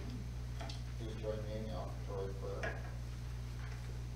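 A voice speaking faintly and off-microphone over a steady low hum, just after piano music has stopped.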